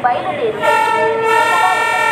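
Electric locomotive horn giving one long, steady note that starts about half a second in, sounded as the train moves along the platform. A public-address announcement continues underneath.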